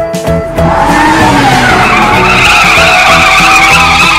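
Tyre squeal sound effect: a loud, long skidding screech of car tyres that starts about half a second in, over children's music.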